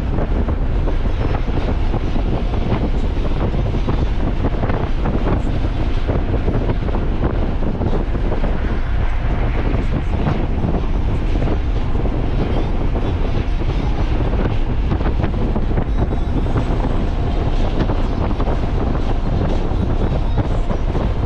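Steady rumble of road and wind noise from a Nissan 300ZX being driven at a constant pace.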